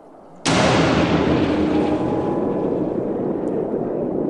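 A sudden loud boom about half a second in, then a long rumble that slowly dies away: a dramatized explosion for the Trieste bathyscaphe's outer acrylic viewport cracking under the pressure near 9,600 m.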